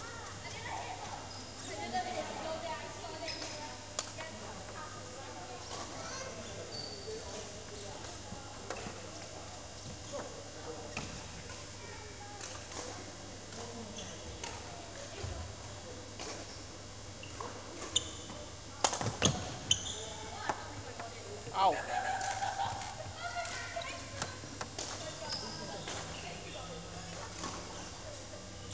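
Badminton play on a wooden indoor court: scattered sharp racket strikes on a shuttlecock, with a quick run of hits about two-thirds of the way through, amid footfalls and voices in the hall. A steady low hum runs underneath.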